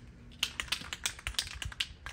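Rapid, irregular clicking of the mixing ball rattling inside an aerosol spray-paint can as it is shaken, about a dozen sharp clicks starting about half a second in.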